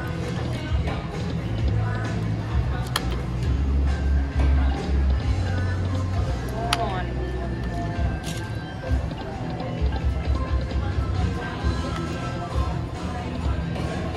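Huff N' Puff video slot machine running through a few spins, with its electronic chimes, jingles and an occasional sharp click. Behind it is the steady hum and babble of a casino floor. No win comes up, so these are losing spins.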